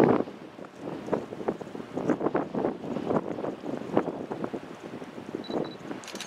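Gusty wind buffeting the microphone in irregular knocks, over faint sound of an approaching Norfolk Southern EMD locomotive and its train; two brief high squeaks near the end.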